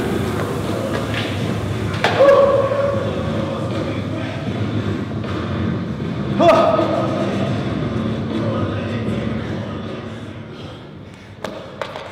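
An air rower's fan whirring, winding down and fading out as the rowing stops, with a man's exhausted breathing and grunts after a hard max-calorie row. Two thuds, about two seconds in and again about six and a half seconds in, each followed by a short vocal groan.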